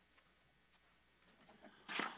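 Near-silent room tone, with a brief rustle just before the end.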